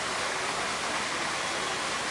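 Steady rushing of running water, even and unbroken.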